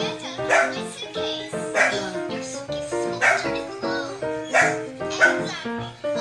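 Background music with a short, bark-like yelp recurring about once every second and a bit, in time with the track.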